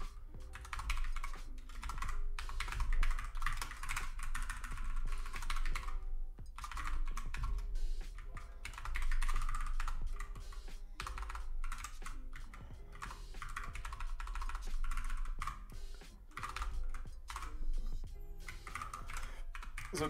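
Typing on a computer keyboard: irregular runs of key clicks with a few brief pauses, as code is entered. Music plays faintly underneath.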